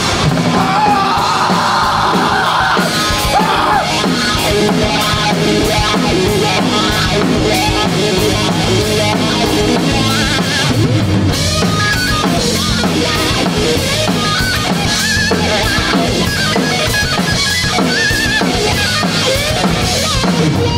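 Grunge rock band playing loud and steady, with a pounding drum kit and distorted electric guitars, in an instrumental stretch of the song. Wavering lead notes sound above the band in the second half.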